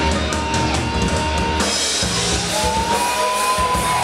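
Heavy metal band playing live: drum kit and distorted electric guitars, with a high lead note held in the first half and another bent slowly upward in the second half.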